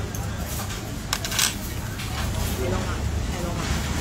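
Busy restaurant background: a steady low hum with faint chatter, and two sharp clinks a fraction of a second apart about a second in.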